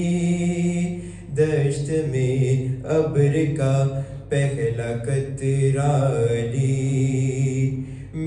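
A young man's voice chanting a devotional qasida into a microphone in long, melismatic held notes. The voice breaks briefly for breath about a second in, about four seconds in and near the end.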